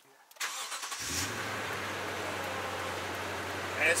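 Toyota Tundra pickup's engine started cold: a brief crank, catching about a second in, then settling into a steady idle with no ticking or knocking.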